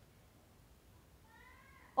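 Near silence, then near the end a faint, brief meow-like call.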